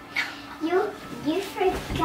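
A child's voice whining in about four short, wordless cries that bend up and down in pitch.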